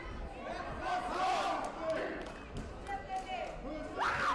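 Voices shouting in a large, echoing sports hall during a taekwondo bout, with several sharp smacks between about one and three seconds in as kicks land.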